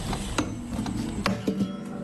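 Acoustic guitar knocking against a metal railing: a few sharp knocks with strings jangling and sliding over the fading tail of a strummed chord.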